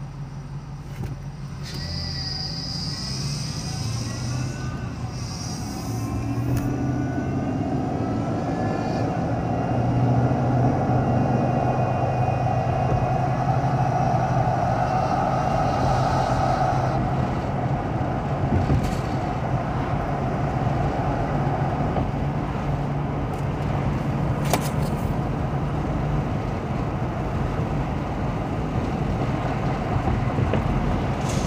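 Car pulling away from a standstill and accelerating to highway speed, heard from inside the cabin. Engine and road noise grow louder over the first ten seconds, with a rising whine early on, then hold steady as the car cruises.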